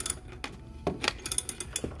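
Ratchet of a socket wrench clicking as its handle, extended with a PVC pipe, is swung back and forth on a lawn mower's stuck blade bolt that has just started to turn. There are a few separate clicks, then a quick run of clicks near the end.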